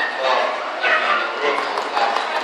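A dog barking over the chatter of people in a large hall.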